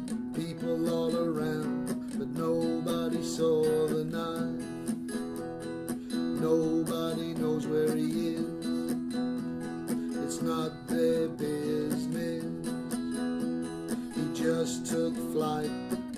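Acoustic guitar strumming chords steadily in an instrumental passage between sung verses of a song.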